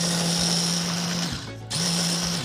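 Handheld immersion blender running in a tall cup. It stops for a moment about a second and a half in, then runs again.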